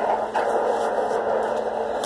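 Steady background hiss with a faint low hum underneath, even throughout, and a light click about a third of a second in.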